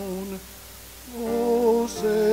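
A slow hymn being sung in long held notes with vibrato. One phrase ends just under half a second in, and the next begins about a second in after a short quiet gap.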